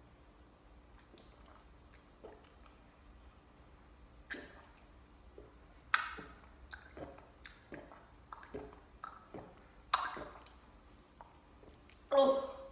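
A person gulping cream soda from a plastic cup: a series of short, wet swallowing sounds starting about four seconds in, the loudest about six and ten seconds in, with smaller ones between.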